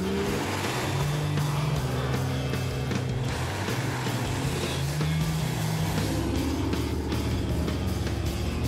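Modified off-road 4x4 trucks' engines running hard, mixed with background music.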